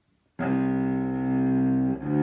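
Cello bowing a single long note on the open C string, the opening half note of a C major scale. It starts about half a second in, holds steady, and changes to the next note right at the end.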